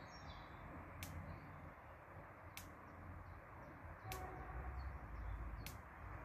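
Faint outdoor ambience: small birds chirping in the background over a low rumble, with a sharp faint tick repeating about every second and a half.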